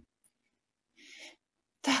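A woman's soft breath in about a second in, then a sudden sharp, breathy burst from her voice near the end.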